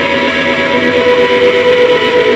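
Live rock band, loud: amplified electric guitars holding ringing, sustained notes that form a steady drone.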